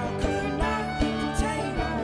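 Acoustic folk band music led by a strummed steel-string acoustic guitar, with regular strums about every half second under sustained pitched notes from the band.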